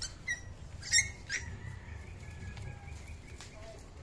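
An animal's short, high-pitched squeaks: four quick ones in the first second and a half, the loudest about a second in, then a thin, high, drawn-out whine lasting a second or so.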